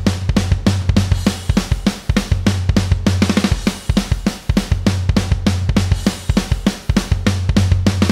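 Programmed MIDI rock drum kit playing back: a steady run of kick, snare and fast tom hits, several a second. The toms' velocity range is set very wide, so each hit lands at a different, unpredictable loudness.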